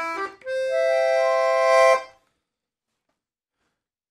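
Silvio Soprani piano accordion's treble side in its clarinet register, sounding a single middle reed: a short note, then a chord built up note by note and held, cut off suddenly about two seconds in.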